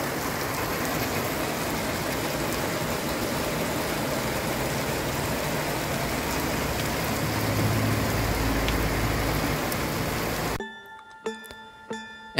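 Heavy rain falling on a paved car park, a steady hiss, with a low rumble swelling about eight seconds in. The rain stops abruptly near the end.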